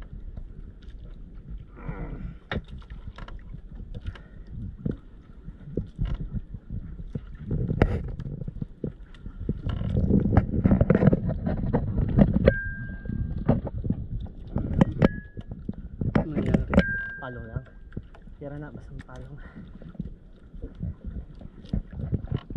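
Water slapping against the hull of a small fishing boat at sea, with scattered knocks and clicks. Three short high beeps come in the second half.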